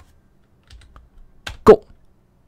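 Computer keyboard keystrokes as a command is typed and entered: faint clicks about the middle, a sharper keystroke near the end, followed by a short loud spoken syllable.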